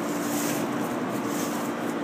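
A steady machine hum with a constant low tone and an even hiss, like a fan or ventilation running.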